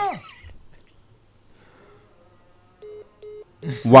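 Three short beeps of a telephone line's call-ended tone near the end, the sign that the caller's connection has dropped.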